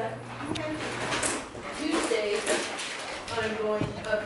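Indistinct voices of people talking in the room, in two short stretches, with a few light clicks between them.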